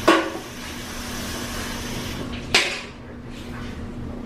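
Kitchen sink clatter during hand washing: two sharp knocks, one at the start and one about two and a half seconds in, over a steady rush of running tap water that drops away soon after the second knock.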